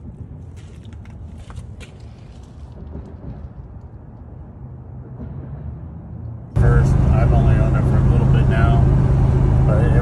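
Cab interior of a 1973 pickup truck cruising at highway speed, about 70 mph: a loud, steady low drone of engine and road noise that starts suddenly a little over halfway through. Before it there is only a quieter low rumble with a few light clicks.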